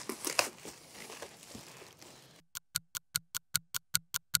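Plastic bag crinkling and rustling as it is pulled and torn out of a packing box. About two and a half seconds in, the room sound cuts out and an edited-in ticking effect starts: fast, even ticks, about five a second.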